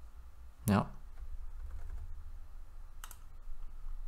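A few computer keyboard keystrokes and clicks while a short password is typed, with a brief vocal sound that falls in pitch just under a second in.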